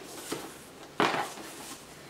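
Ribbon being untied and pulled off a cardboard Hermès gift box: soft handling rustle with a small tap early and one sharper sudden swish or knock about a second in.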